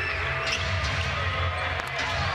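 A basketball being dribbled on a hardwood court over a steady low arena background hum.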